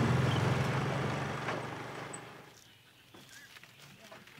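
Farm utility vehicle's engine running, fading away over the first two and a half seconds to a faint background.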